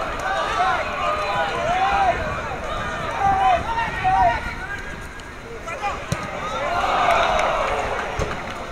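Several voices shouting and calling over one another during open play at a football match, then a swell of spectators' voices near the end as the ball reaches the goalmouth. A single sharp thud sounds about six seconds in.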